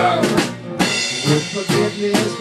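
A band playing a song live, the drum kit to the fore with snare and kick drum hits over bass and guitar. There is a short drop in level just over half a second in before a loud drum hit.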